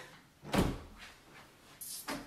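A closet door: a single thump about half a second in, then a short, sharp click near the end as the door is opened.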